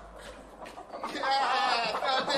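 A person laughing. The laugh is high and wavering, and gets louder about a second in.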